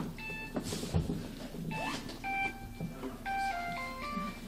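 Phone ringing with a melodic ringtone: a short tune of electronic beeping notes that step up and down in pitch. There is a brief knock about a second in.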